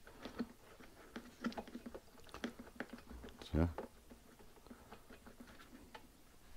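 Faint, irregular light clicks and taps of a metal spark-plug spanner being turned by hand in the plug well of a Black+Decker BXGNi2200E inverter generator, snugging the spark plug down hand-tight. A short vocal sound about three and a half seconds in.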